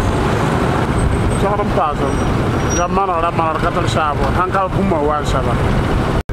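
Street traffic with motorcycles and cars running close by: a steady low rumble of engines throughout. A voice speaks over it in the middle of the stretch.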